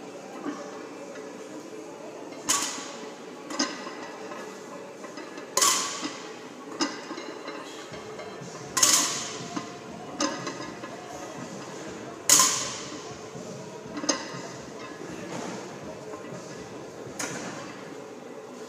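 Loaded barbell with weight plates being lifted and set back down on the gym floor rep after rep: four loud clanks with a short ring, about three seconds apart, with lighter clinks of the plates in between.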